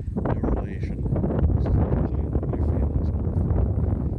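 Wind buffeting the camera's microphone: a loud, steady low rumble that swells up right at the start.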